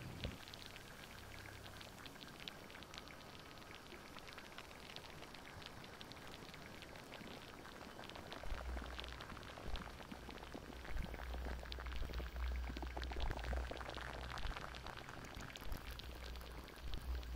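Faint, dense crackling and pattering, like rain or bubbling liquid, with a low rumble coming in about halfway through.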